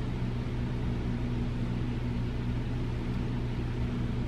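Steady hum of a small electric motor over an even hiss, unchanging throughout.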